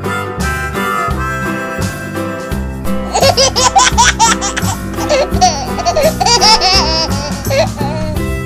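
Background instrumental music with a beat. About three seconds in, a baby's giggling laughter joins over the music and carries on.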